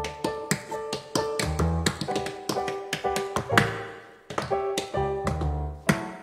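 Tap dancing on a portable round tap board: quick, irregular runs of sharp taps. Electric keyboard chords and a bass line play underneath.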